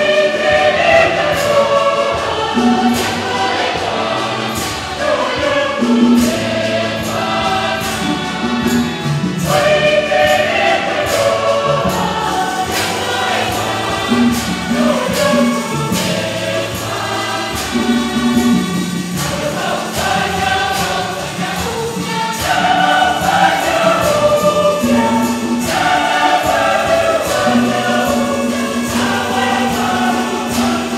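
Church choir singing a hymn with instrumental accompaniment: a held bass line under the voices and a light, regular percussion beat.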